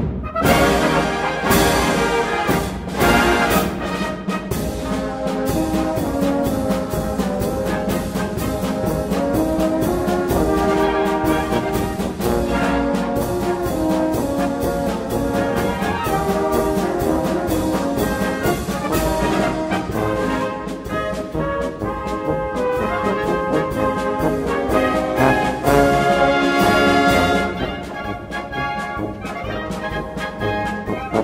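Brass band playing a polka: brass melody over a steady, evenly pulsing beat, dropping to a softer passage near the end.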